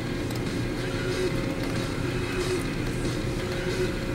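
Steady low mechanical hum of room background, with a few faint clicks from a computer mouse working a drop-down menu.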